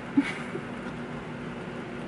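Electric fan running with a steady low hum, with one short sharp click just after the start.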